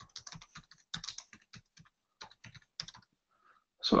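Typing on a computer keyboard: a quick, uneven run of key presses that stops about three seconds in.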